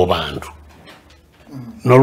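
A man speaking in a deep voice. His words trail off in the first half-second, he pauses for about a second, and he starts speaking again near the end.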